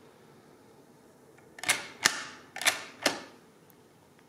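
Hamann Manus E mechanical calculator clacking: four sharp metal clicks in two pairs, starting about one and a half seconds in, from its crank and carriage mechanism being worked.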